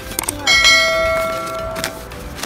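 Subscribe-button animation sound effect: a short click, then a single bright bell ding about half a second in that rings for over a second and cuts off abruptly.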